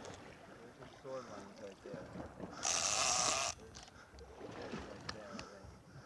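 Water splashing against the side of the boat, loudest in one hiss-like burst about a second long near the middle, with low voices murmuring around it.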